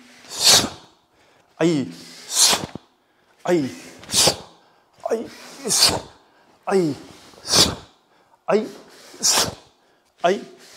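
A karateka's forceful breathing through a kata: six sharp, hissing exhalations, about one every 1.7 s, timed to each block and punch. Each is preceded by a short grunt.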